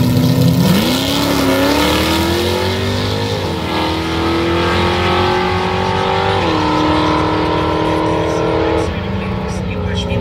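Two drag-racing vehicles, a pickup truck and a car, launching from the starting line and accelerating hard away down the strip. The engine note starts climbing about a second in and drops back at each gear change, about three and a half seconds in, about six and a half seconds in and near the end.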